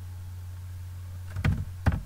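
A few computer keyboard keystrokes, a quick cluster about one and a half seconds in and one more sharp click just after, over a steady low electrical hum.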